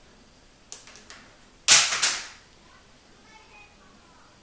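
A few light clicks, then two loud, sharp snaps about a third of a second apart, from small hard objects being handled during hair styling.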